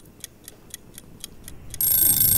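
Steady clock-like ticking, about four ticks a second. Near the end a bell starts ringing continuously, high-pitched.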